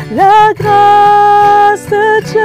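A woman singing a worship song to her own strummed acoustic guitar. She slides up into a note near the start, then holds a long, steady note for over a second.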